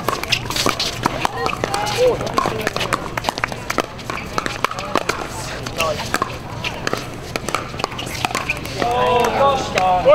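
Pickleball paddles hitting plastic balls: sharp, irregularly spaced pops from the rally and from neighbouring courts, with people talking in the background.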